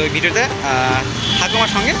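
A man's voice talking over a steady low rumble of street traffic.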